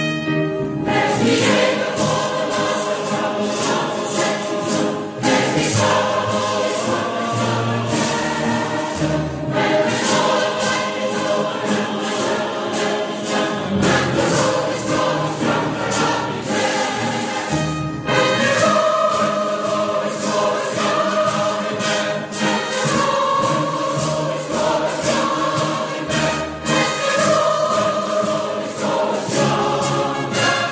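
A group singing a gospel hymn together over instrumental accompaniment with a steady beat.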